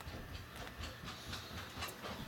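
Faint low rumble with a light click or two near the end.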